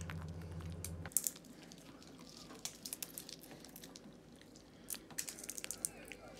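Cockatiel cracking sunflower seed husks with its beak: scattered small, sharp cracks in little clusters. A low hum runs underneath for the first second, then stops.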